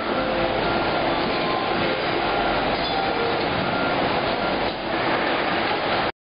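Steady factory-floor machinery noise with short faint tones coming and going, and a brief dip in level a little before the end.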